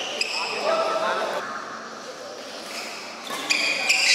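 Sports shoes squeaking on an indoor badminton court, with sharp racket hits on the shuttlecock starting near the end as a rally gets going. A voice calls out early on, and the hall echoes.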